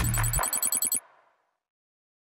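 Closing theme music of a TV news programme: an electronic sting with deep bass and a fast, high ringing pattern that cuts off about a second in, then silence.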